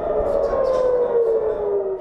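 Civil-defence air-raid siren wailing, its pitch falling slowly and steadily: the alarm warning of incoming missiles.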